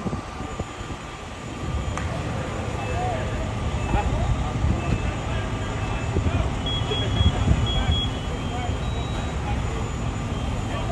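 Low steady rumble of fire engines running, with distant voices calling over it. A short run of high beeps sounds about seven seconds in.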